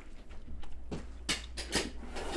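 A person chewing a bite of microwaved sushi roll, with a few short mouth clicks about a second and a half in.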